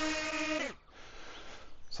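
Small DJI Flip drone's propellers whining at a steady pitch, then sliding down in pitch and stopping about two-thirds of a second in as the motors spin down.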